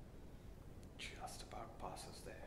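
Quiet room tone, then from about a second in a person whispering a few words, with sharp hissing 's' sounds.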